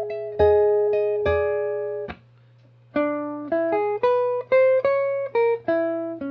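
Hollow-body archtop electric guitar through an amp: a two-note double stop struck a few times and let ring, then after a short pause a quick line of picked notes and double stops that climbs and falls back. A steady low hum runs underneath.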